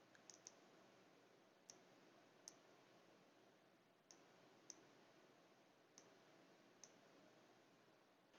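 Faint computer mouse clicks, about eight of them spaced roughly a second apart, over near-silent room tone.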